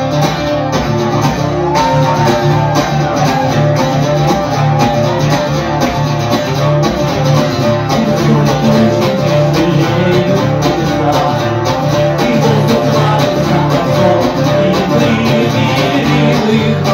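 Amplified electro-acoustic guitar strummed in a steady rhythm, playing chords without singing.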